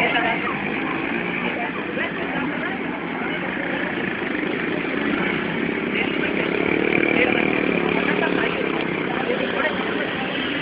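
Busy street noise: motorcycle and vehicle engines running, with people's voices mixed in.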